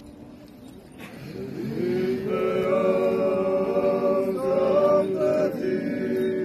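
Group of voices chanting an Orthodox church hymn in long held notes over a steady sustained low note. It comes in after a short lull about a second and a half in and grows louder.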